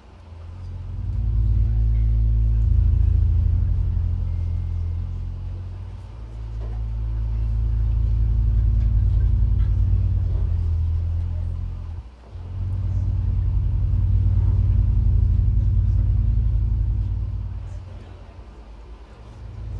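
Amplified synthesizer drone: deep, sustained bass tones with a few steady higher notes above them, swelling and fading in slow waves about every six seconds, with a sharp dip about twelve seconds in.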